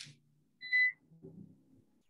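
A single short electronic beep: one steady high tone lasting about a third of a second, a little over half a second in.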